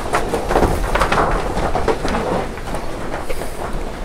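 Cattle jostling in a crowded wooden corral: scattered knocks and clatter of hooves and bodies against the boards over a steady low rumble.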